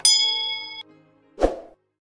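Subscribe-button notification bell sound effect: a bright ding that rings steadily for most of a second and then cuts off. A short low thump follows about a second and a half in, then the sound stops.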